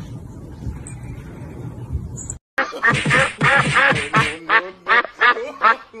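A low, even noise for the first couple of seconds. After a brief gap, a white domestic duck quacks loudly: a long run of rapid quacks, then a string of about six short separate quacks.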